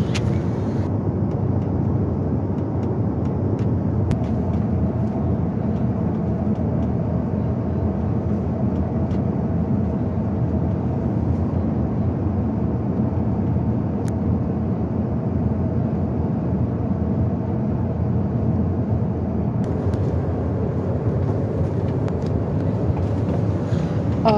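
Steady low drone of an airliner in flight, heard from inside its crew rest compartment: engine and airflow noise, with a few faint clicks.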